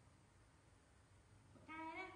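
A baby macaque gives one short, fairly level coo near the end, after a second and a half of near silence.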